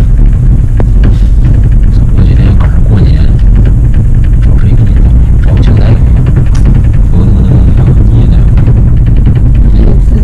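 Loud, steady low rumble inside a moving cable car cabin as it travels down along its cable.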